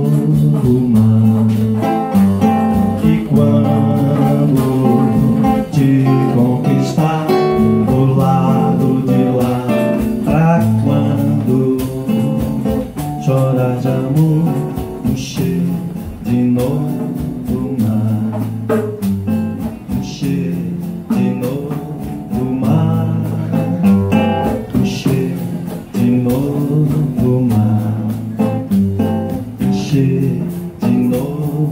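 Live acoustic guitar music: an instrumental passage of steady strummed and picked chords with a band playing along.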